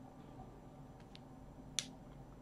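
A steady faint hum with two faint ticks about a second in and one sharper click near the end.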